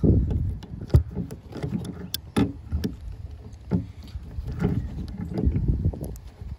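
A hand tool knocking and clicking against the plastic retaining screw of a tail-light housing as it is worked loose, over a low rumble of handling noise against the trunk trim. The sharpest knock comes about a second in, and more scattered clicks follow.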